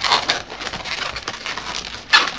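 Inflated latex 260 twisting balloons rubbing against each other as a long balloon is worked through the sculpture: a dense run of scratchy crackles and rubbing noises, loudest right at the start.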